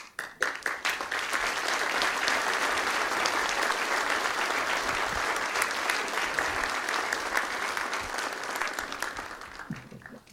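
A lecture audience applauding: many hands clapping in a dense patter that starts suddenly, holds steady for several seconds and dies away near the end.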